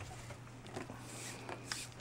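Faint rustling of nylon paracord being handled and slid across a mesh mat, with a few light clicks.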